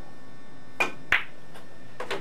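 Pool shot played with low (draw) English: a sharp click of the cue tip striking the cue ball, then a second click about a third of a second later as the cue ball hits an object ball.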